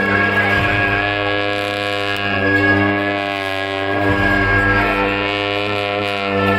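Tibetan monastic ritual music for the cham dance: long horns sound a low, steady drone with a higher sustained tone held above it, swelling slightly in loudness.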